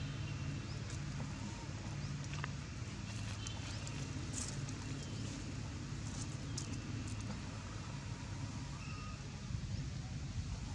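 Outdoor ambience: a steady low hum with faint, short bird-like chirps now and then.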